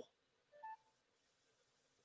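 Near silence in a pause between speech, broken once, about half a second in, by a brief faint electronic beep.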